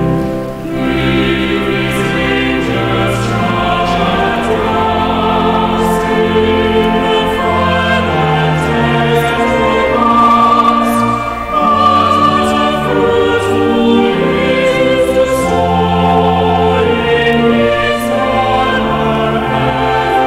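A choir singing a church anthem in long held notes, with brief dips in loudness about half a second in and again about halfway through.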